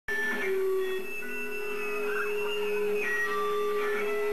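Live punk band's amplified electric guitars ringing out long held notes: one steady note sustained throughout while higher notes come and go, before the strumming starts.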